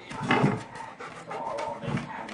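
A dog whimpering, with panting breaths: a short huff about a third of a second in and a thin, high whine in the second half.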